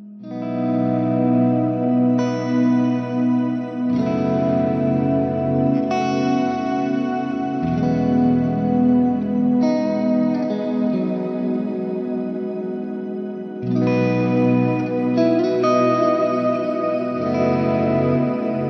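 A Veritas Double Cut Portlander electric guitar played through a Hotone Ampero II Stage multi-effects unit on an ambient preset, with its drive just switched on. Held chords ring out with a high-octave shimmer delay and lush reverb, and the chord changes every two to four seconds.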